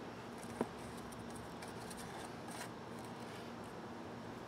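Honeybees at an open top bar hive buzzing in a steady low hum, with light scraping and clicking as a glass mason jar is handled. A brief sharp sound about half a second in is the loudest moment.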